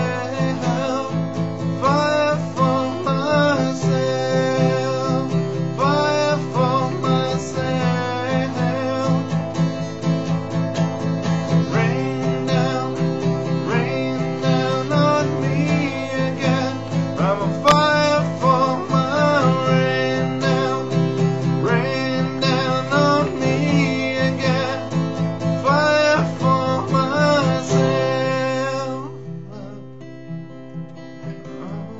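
A man singing to his own acoustic guitar playing. Near the end the voice stops and the guitar carries on more quietly.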